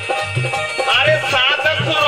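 Live Indian folk music: a dholak drum keeps a steady beat, about every 0.4 s, under a wavering keyboard melody.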